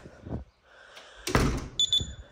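A front door shutting with a single solid thud about a second and a half in. Right after it comes a short, high electronic beep from its keypad lock.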